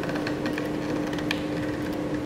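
A steady mechanical hum with a constant low tone, with a few faint clicks from a screwdriver tightening the pivot screw of a metal solar-panel wall bracket.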